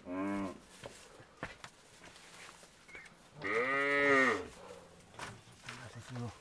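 A cow mooing twice: a short call at the start, then a longer, louder moo about three and a half seconds in that rises and falls in pitch. A few faint knocks sound between the calls.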